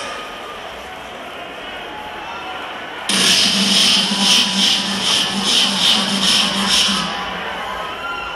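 Live concert sound through a festival PA: crowd noise, then about three seconds in a pulsing electronic sound with sharp high beats about three times a second over a steady low hum, lasting some four seconds before dropping back to crowd noise.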